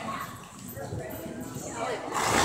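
Indistinct voices with a galloping horse's hoofbeats on arena dirt.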